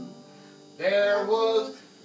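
Acoustic country band music at a stop in the song. There is a quiet break of under a second, then a single short pitched phrase about a second long, then another brief break.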